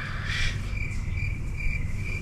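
Stock cricket-chirp sound effect: short, evenly spaced chirps about twice a second over a low hum, the comic 'crickets' cue for an awkward silence.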